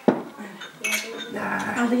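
Drinking glasses clinking together in a toast, with two sharp clinks in the first second.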